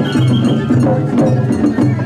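Japanese festival ohayashi music: a small hand-struck metal gong (kane) clanging in a fast, steady rhythm over drums, with a brief high flute note early on.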